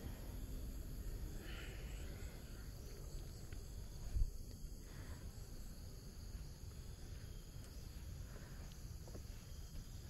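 Quiet outdoor background: a low, uneven rumble with a single soft thump about four seconds in.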